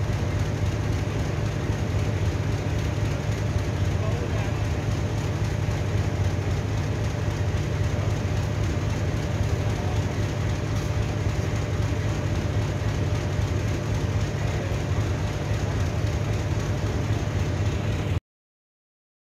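Steady low rumble of a running engine with a faint steady hum above it, unchanging throughout.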